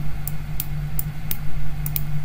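About five sharp computer mouse clicks, spaced irregularly, over a steady low hum.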